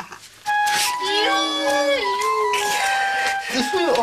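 A shrill, off-key melody starts about half a second in: held high whistling notes stepping from one pitch to another over a wavering wail, a terrible sound.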